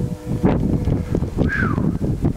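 Strong wind buffeting the camera microphone in a snowstorm, a loud, gusty low rumble. A brief falling tone sounds about one and a half seconds in.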